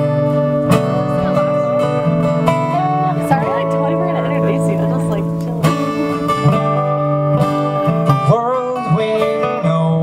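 Live acoustic string duo, acoustic guitar with a picked lead line on a second plucked string instrument, playing an instrumental passage in a bluegrass-folk style.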